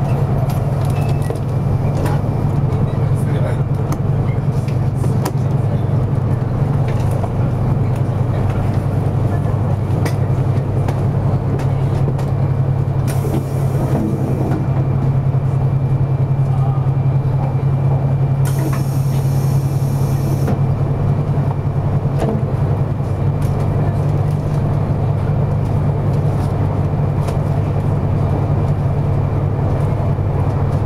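Cabin noise of a 200 series Shinkansen under way: a steady low rumble and hum with running noise from the track. Two short hisses come about halfway through and again a few seconds later.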